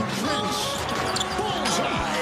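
Basketball bouncing on a hardwood court during live NBA play, with arena noise behind it.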